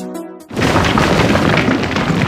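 Electronic music fades out, then about half a second in a sudden loud boom sound effect hits and runs on as a dense rumbling, crumbling noise, the kind of stone-shattering effect laid under a logo that breaks apart from rubble.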